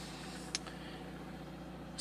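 Steady low hum inside a car's cabin, with one faint click about half a second in.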